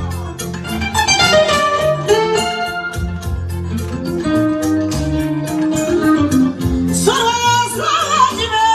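Live Malian music over loudspeakers: a woman singing long, winding melodic lines over a band with steady bass notes and a regular high ticking beat.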